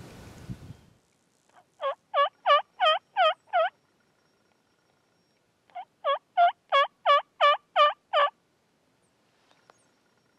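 Turkey yelping: two runs of evenly spaced yelps, about three a second, each run starting with a softer note, with a pause of about two seconds between them. Some rustling fades out in the first second.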